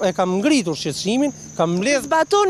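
Mostly people talking over each other, with a steady high-pitched chirring of insects underneath.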